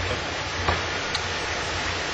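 Steady rushing background noise with a low hum beneath it, and two faint clicks about half a second apart.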